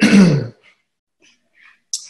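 A man clears his throat once, loudly, into his fist, with a falling pitch, in the first half second. A short hiss of breath follows near the end.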